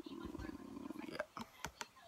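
A low buzzing hum for about the first second, then three sharp clicks as a plastic jar of leave-in conditioner is handled close to the phone's microphone.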